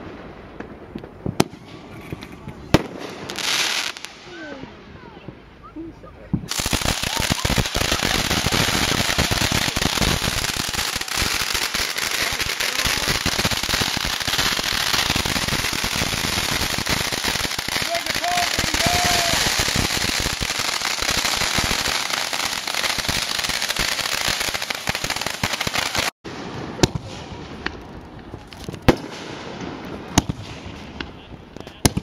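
Consumer fireworks: a few scattered sharp bangs, then from about six seconds in a dense, continuous crackling and hissing from a ground firework spraying sparks close by. This cuts off suddenly a few seconds before the end and leaves more scattered bangs.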